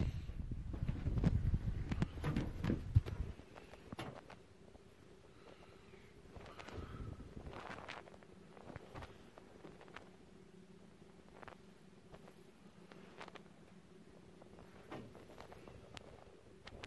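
Footsteps and handling rumble from a handheld phone camera being carried over a concrete floor for the first few seconds. After that, a faint steady hum with scattered light clicks and taps.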